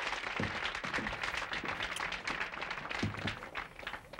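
Applause from many clapping hands running on while a guest takes her seat, with a few faint murmured words underneath.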